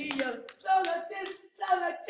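A voice singing in short, evenly spaced phrases during worship, with a couple of sharp hand claps near the start.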